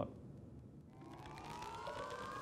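A faint electronic rising tone, a riser sound effect in a promo's soundtrack, begins about a second in and climbs slowly and steadily in pitch.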